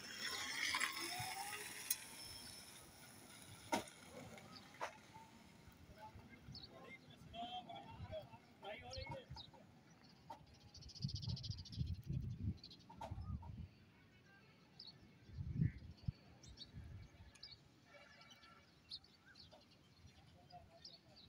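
Quiet outdoor background: faint, distant talking and occasional short bird chirps, with some low rumbling bursts of wind on the microphone. The electric scooter itself makes no clear sound.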